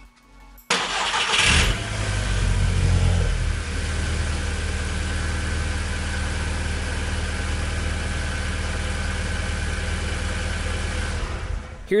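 Volkswagen Golf R's 2.0 litre turbocharged four-cylinder engine starting on its first start after a new cam follower and the high-pressure fuel pump have been fitted. It catches about a second in, flares briefly in revs, then settles into a steady idle through an open cone air filter until a cut near the end.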